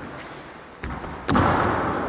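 Aikido partner thrown with shihonage and landing in a breakfall on the padded mat: a lighter thud a little under a second in, then a loud body-on-mat thud about a second and a half in that rings out in the large hall.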